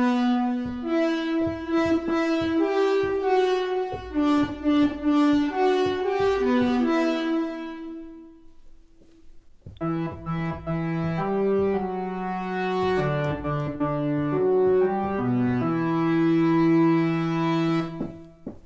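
A slow, brass-like trailer melody played by layered synthesizer leads and sampled orchestral brass, in two phrases. The first phrase is a single line that fades away; after a short pause the second phrase comes in with the melody doubled an octave lower, the orchestral brass forming the lower octave under the Retrologue lead layers.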